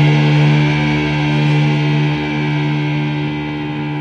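Black metal recording: a held electric guitar chord ringing out with no new notes struck, its bright upper part dying away and the level slowly falling as the track nears its end.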